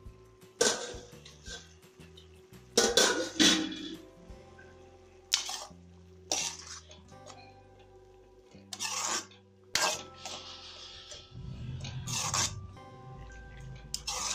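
A steel ladle clanking and scraping against a metal kadai while stirring a thick tomato gravy, about eight sharp knocks spread irregularly, over quiet background music.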